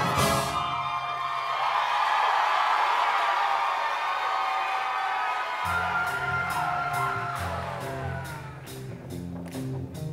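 Live show-choir band music: a crash at the start opens a long held chord with the bass and drums dropped out, and about six seconds in the bass line and a steady drum beat come back in.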